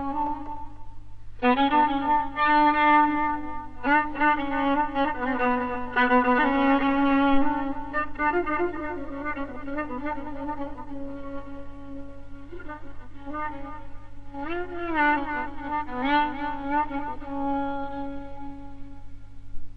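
Violin playing Persian classical music in dastgah Homayun: sustained bowed notes with vibrato and slides, in phrases with short breaks, over a steady low hum.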